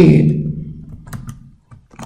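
The end of a spoken word fading out, then a few faint computer keyboard key clicks a little past one second in and near the end, as an Excel keyboard shortcut is typed.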